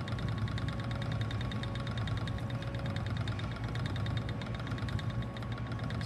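Ashford Elizabeth 2 spinning wheel running steadily while plying yarn, its flyer and bobbin turning: a constant whir with a fast, even ticking.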